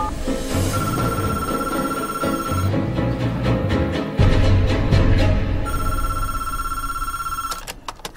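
Telephone ringing twice, each ring a steady tone lasting about two seconds, over low brooding music, with a click near the end.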